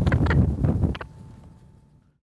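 Peregrine falcon giving a rapid run of harsh 'kak' calls, about seven a second, with wind on the microphone; the calls stop about a second in and the sound fades out.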